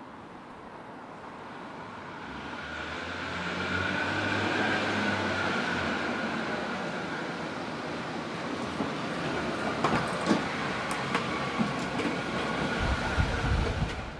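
A Jaguar X-Type saloon driving through a multi-storey car park, its engine and tyres echoing off the concrete. The sound grows louder about two seconds in, with a steady high whine over it. Several sharp clicks and knocks follow in the last few seconds, with low thumps near the end.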